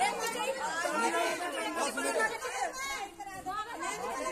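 Overlapping chatter of a group of people talking at once, with a brief lull about three seconds in.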